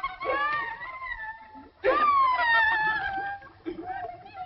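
A cartoon character's voice wailing in two drawn-out cries. The second is louder, starts sharply and slides down in pitch.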